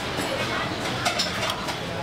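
Steady background hubbub of a street food stall, with faint voices and a few small clicks.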